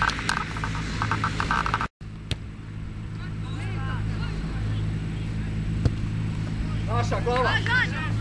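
Outdoor football match sound: distant players shouting, loudest near the end, with a few sharp ball-kick knocks. A steady low hum runs underneath, and the sound cuts out for a moment about two seconds in.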